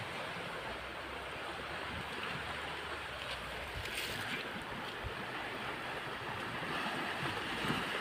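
A steady rushing noise with no pitch to it, holding an even level, with a faint tap about five seconds in.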